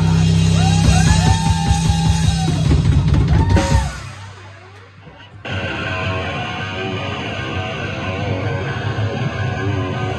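Live rock band playing loud on distorted electric guitars, bass and drum kit, with gliding guitar pitches over the bass and drums. The band cuts out abruptly about four seconds in, leaving a brief quieter ring, then crashes back in about a second and a half later.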